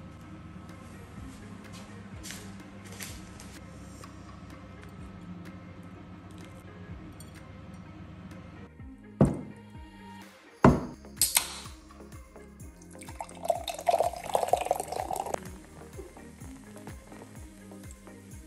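An aluminium can of cola knocked down on a counter twice, cracked open with a sharp hiss, then poured into a glass for about two seconds, fizzing as it fills. Background music is heard in the first half.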